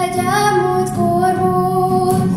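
A young woman singing a slow melody in long held notes, accompanied by acoustic guitar.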